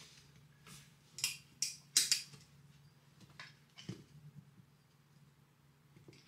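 Scattered short clicks and fabric rustles as a lounge chair's frame pieces are handled and fitted into its fabric cover, about half a dozen, mostly in the first four seconds.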